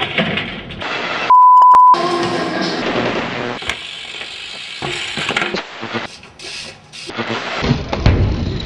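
A steady electronic beep at one pitch, lasting about half a second a little over a second in and louder than anything else, over a noisy background with scattered clicks and clatters.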